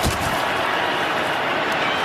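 Steady, dense stadium crowd noise during a live football play, with a single sharp knock right at the start.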